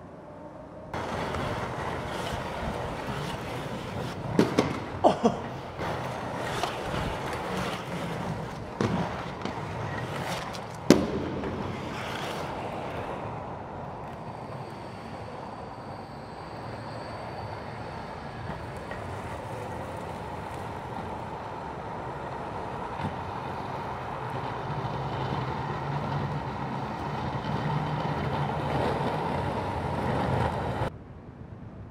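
Inline skate wheels rolling on a concrete parking-garage floor, a steady rolling noise with a few sharp clacks about four to five seconds in and a single loudest clack about eleven seconds in.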